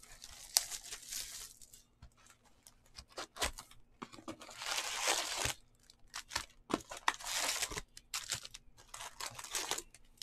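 Wrapping torn off a trading-card box and wrapped card packs crinkling as they are handled and lifted out, in several bursts of tearing and rustling with small clicks between.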